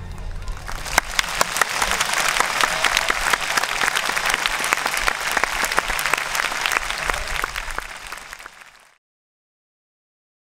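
Audience applauding at the close of a string ensemble's performance, many hands clapping at once; the applause fades out near the end.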